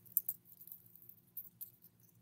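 Faint light clinks of a silver chain necklace and its pendant being handled, a few small ticks near the start and a couple more a little past the middle.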